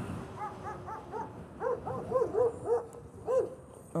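Dog barking repeatedly, about a dozen short barks, three or four a second.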